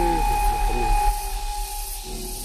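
Chainsaw running at a steady high whine that drops away about a second in.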